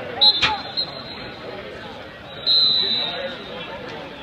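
Two high referee's whistle blasts, a short one near the start and a longer one about two and a half seconds in, over the babble of a gym crowd. A sharp clap sounds about half a second in.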